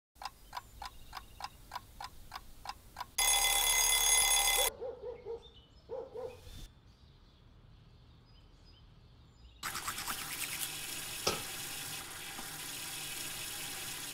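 A mechanical alarm clock ticking about four times a second, then its bell ringing loudly for about a second and a half before it stops. Softer scattered sounds follow, and about ten seconds in a fuller, steady sound comes in.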